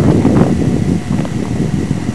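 Wind buffeting a camcorder's microphone: a loud, low rumble that eases a little after the first half-second.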